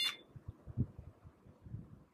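Short electronic beep from a Samsung UV sterilizer as its start button is pressed, right at the start. After it, only faint low knocks as the plastic box is handled.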